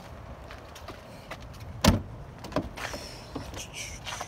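A car door of a BMW X5 slammed shut with one sharp, loud thud about two seconds in, amid light clicks and handling noises.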